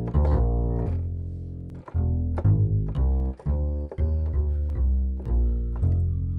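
Sampled upright jazz bass, a Kontakt software instrument, playing a plucked bass line, about two notes a second.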